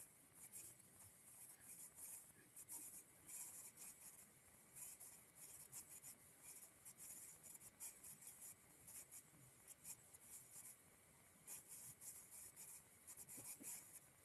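Near silence: room tone with faint, irregular, high scratchy rustling.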